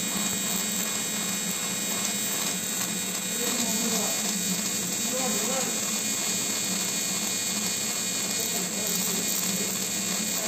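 Handheld electro-spark deposition gun with a rotating tungsten carbide electrode, its motor giving a steady electric buzz as it deposits carbide onto a steel die surface.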